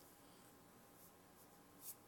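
Near silence: faint room tone, with one brief soft rustle near the end.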